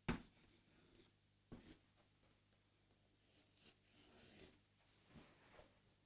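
Chalk writing on a blackboard, very faint: a couple of short taps early on, then a soft scratching stretch through the middle as words are written.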